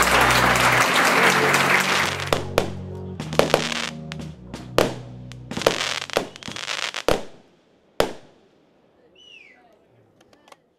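Fireworks going off over fading music: a quick run of sharp bangs and crackling reports, ending in two loud single bangs a second apart, after which it turns quiet.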